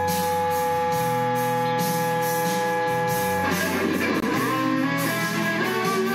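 Electric guitar played through a Boss ME-25 multi-effects unit's Harmonist effect, which adds a parallel harmony voice to each note. A long held note rings for about three and a half seconds, then gives way to a run of quicker notes with bends.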